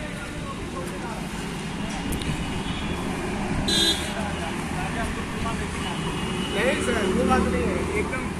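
Road traffic noise with a motor scooter's engine running close by, and a brief high horn beep about four seconds in.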